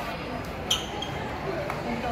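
Background voices and chatter of a busy indoor eating area, with one sharp high click a little under a second in.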